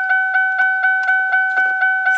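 A car's electronic warning chime dinging rapidly and continuously, about four dings a second, each ding a two-note tone that rings and fades.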